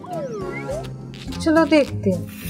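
Cat-like meowing calls from a person's voice over background music: one falling call a quarter second in, then a wavering call about a second and a half in.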